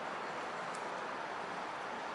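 Steady outdoor background hiss with no distinct events, only a faint tick under a second in.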